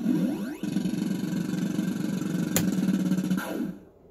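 Action Note fruit machine playing its electronic sound effects: crossing rising and falling synth sweeps at the start, then a dense warbling tone with a sharp click about two and a half seconds in, ending on a falling sweep that cuts off just before the end.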